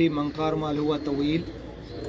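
A man's voice speaking, mainly in the first second and a half.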